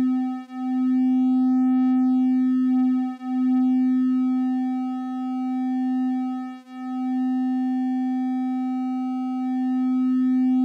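Two Intellijel Dixie analogue oscillators playing triangle waves at nearly the same pitch, beating against each other. The beats slow as the second oscillator is tuned to the first: dips about a second in, about three seconds in and between six and seven seconds, then a slow sag near nine seconds, settling toward unison.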